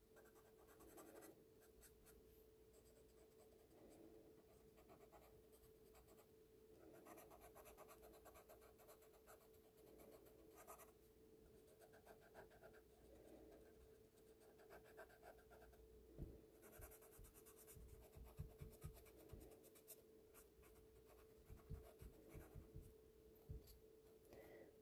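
Faint rubbing of a cotton swab on sketchbook paper in short, intermittent strokes, smudging graphite pencil shading to blend it.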